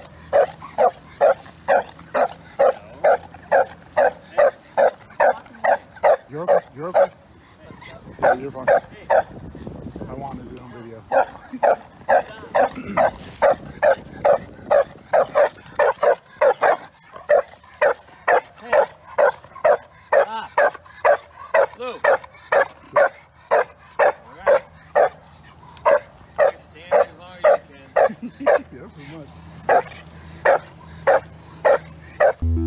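A Shar-Pei dog barking over and over in a steady rhythm of about two to three barks a second, with a lull of a few seconds about a third of the way in before the barking picks up again.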